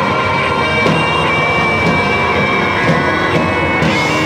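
Live rock band playing loud: drum kit with cymbal hits under electric guitars holding long, droning notes.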